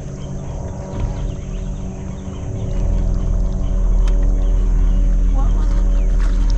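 Steady hum of a bass boat's electric trolling motor, with a low rumble that swells about halfway through and holds.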